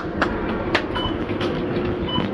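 Small wheels of a shopping basket trolley rolling and rattling over a tiled floor: a steady rumble with a few sharp clicks near the start.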